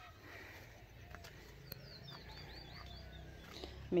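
A small bird calling faintly, a quick run of about six short high chirps near the middle, over a low steady background rumble, with a couple of faint clicks.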